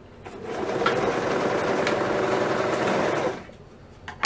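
Serger (overlocker) stitching a sleeve onto a shirt: it starts just after the opening, runs steadily at speed for about three seconds, and stops suddenly.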